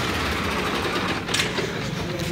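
New Holland 3630 tractor's three-cylinder diesel engine idling steadily.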